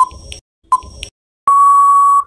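Quiz countdown-timer beeps: two short electronic beeps about three quarters of a second apart, then, about one and a half seconds in, one long steady beep that signals time is up.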